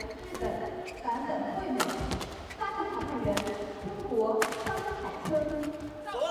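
Badminton rally: rackets hitting the shuttlecock about once a second, five sharp hits with the strongest in the middle. Short squeaks from players' shoes on the court floor, in a large hall with voices in the background.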